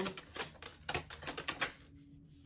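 A tarot deck being shuffled by hand: a quick, irregular run of crisp card clicks that stops just before the end.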